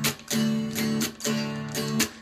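Guitar strumming chords, several strokes each ringing on.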